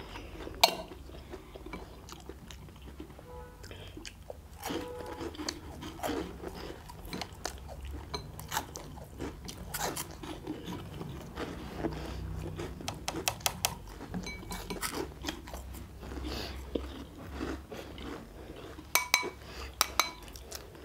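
People chewing and crunching cheese balls close to the microphone, with irregular small clicks and taps as chopsticks pick at the bowls and plates.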